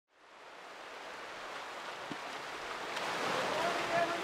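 Surf washing onto a rocky beach, fading in from silence, with faint voices appearing near the end.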